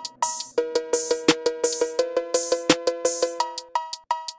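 Drift phonk beat: a fast, repeating pitched cowbell melody over drum-machine hits. A second, lower cowbell line joins about half a second in and drops out shortly before the end.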